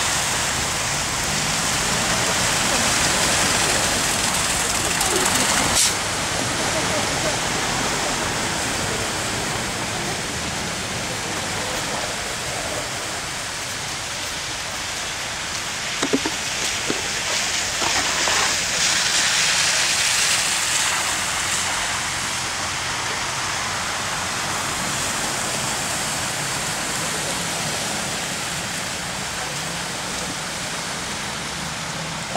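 Vehicle tyres hissing through slush and meltwater on a wet road, a steady wash of noise that swells and eases as traffic passes. A sharp click about six seconds in and a few short knocks about halfway through.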